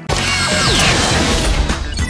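TV network bumper sound effects start suddenly and loudly: a burst of mechanical clanking and whirring with falling whistling sweeps, over music, as an animated machine-style graphic plays.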